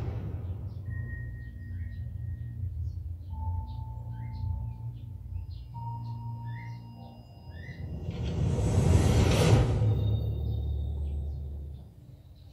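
Film trailer soundtrack played through home-theater speakers in a small room: a steady low rumbling drone under a few held tones and short high electronic blips, building into a big whooshing swell past the middle as the title card comes up, then fading away near the end.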